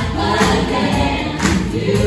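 Pop choir singing live through microphones, backed by a band of drum kit, bass guitar and keyboard. The drums mark a strong beat about once a second.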